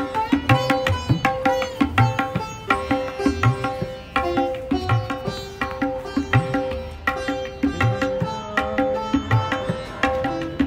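Instrumental background music: a plucked-string melody of short ringing notes over a steady low drum beat.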